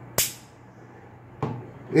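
A sharp metallic click just after the start, with a brief decaying tail, then a fainter click about a second and a half in: the small steel parts of a Glock striker assembly (striker, spring and spring cups) being worked in the hands.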